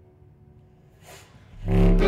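A short hush in a chamber piece for strings, contrabass clarinet and baritone saxophone, with a brief faint noise about a second in. Then, about a second and a half in, the whole ensemble comes back in together: a loud, full chord with a heavy low bass under the bowed strings.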